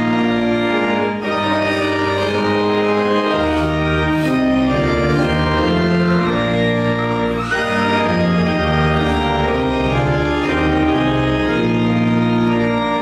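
Church organ playing a hymn in sustained chords over a slow-moving bass line.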